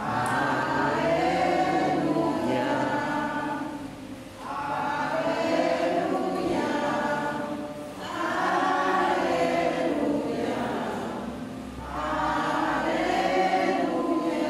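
A church congregation singing a hymn together in long sung phrases of about four seconds, with short breaks for breath between them.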